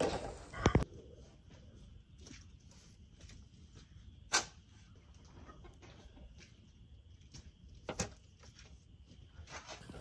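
Mucking out a goat stall: a pitchfork scraping and lifting wet hay and manure into a steel wheelbarrow, with faint scattered scrapes and two sharp knocks about four and eight seconds in. A couple of loud thuds in the first second.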